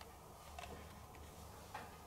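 Quiet room tone with a low hum and three faint, light ticks about half a second apart.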